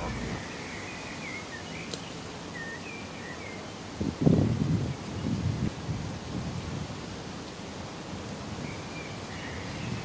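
Outdoor ambience with small birds chirping on and off, and two short, louder low bursts, one about four seconds in and another about a second later.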